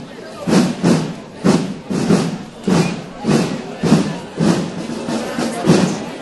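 Rhythmic thuds, roughly two a second with some in quick pairs, over the murmur of a crowd's voices.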